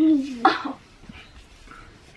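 A young child's wordless voice holding a drawn-out note, which breaks off about half a second in with a short sharp cry; after that only faint small sounds.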